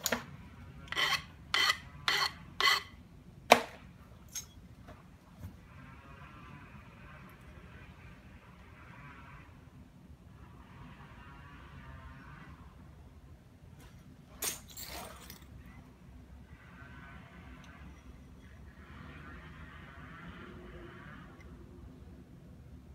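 Flintknapping: a hand-held percussion tool striking the edge of a stone biface, about six sharp clicks in quick succession in the first few seconds, then one more strike about fourteen seconds in. Between the strikes come several stretches of gritty scraping against the stone edge.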